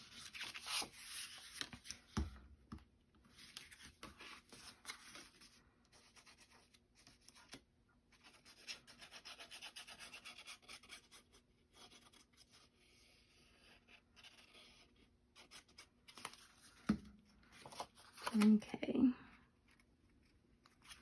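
Faint rustling and rubbing of cardstock being handled and slid into place on a cutting mat, with small clicks. About nine seconds in there is a steadier scraping stretch as liquid glue is run from a squeeze bottle's nozzle along a paper strip.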